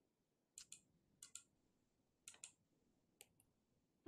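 Faint computer mouse clicks: four quick groups, mostly double clicks, about a second apart.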